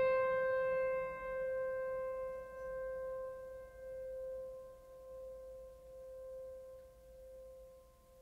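A single struck, bell-like musical note ringing out and slowly dying away, its level swelling and dipping as it fades.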